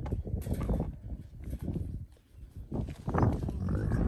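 A camel at very close range making sounds into the microphone, irregular and coming and going, loudest about three seconds in.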